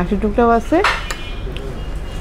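Metal spoon clinking against a ceramic serving bowl while dal is scooped, with one sharp clink and a brief ringing note about a second in, then a few softer scrapes.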